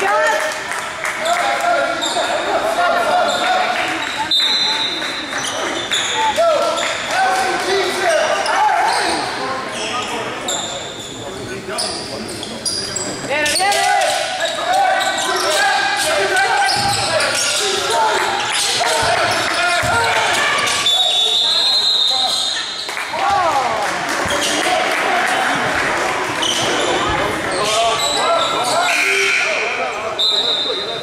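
Basketball game sounds in a gym hall: the ball bouncing on the hardwood floor amid players and spectators calling out, with a few short high squeaks, all echoing in the large room.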